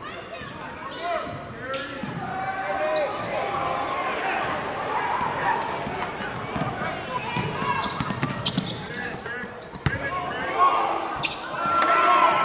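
Live game sound in a gym: a basketball dribbled on the hardwood floor, with players' and spectators' voices echoing through the hall. There is one sharp knock a little before ten seconds in.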